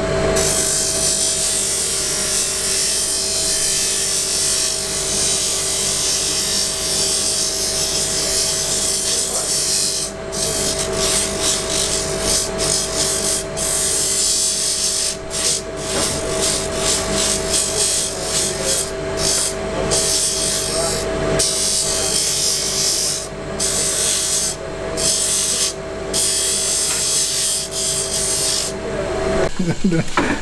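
Electric bench motor spinning a sanding disc, with a steady hum, and the hiss of a small wooden pipe part being sanded against it. From about a third of the way in the hiss keeps breaking off briefly as the piece is lifted and pressed back to the disc. Motor and sanding stop abruptly about a second before the end.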